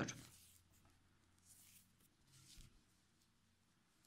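Near silence with faint, soft rustling of cotton yarn and a crochet hook as stitches are worked, twice in the middle of the stretch.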